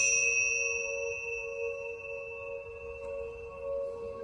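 Meditation music: a struck bell rings out and fades over the first two or three seconds, above a steady, gently wavering two-note drone.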